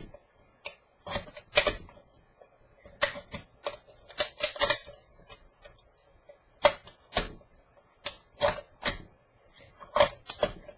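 X-Acto knife blade cutting around a thin aluminium soda can, the metal giving irregular sharp clicks and crackles in small clusters with short pauses between.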